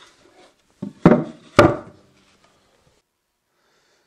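Knocks and thumps from a three-quarter-inch birch plywood box base being handled, with two loud ones about a second in and half a second apart.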